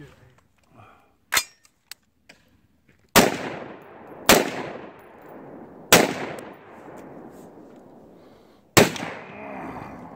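AR-15-style rifle fired four times at uneven intervals, each shot ringing out in a long fading echo. A single short sharp crack comes about a second and a half in, before the first shot.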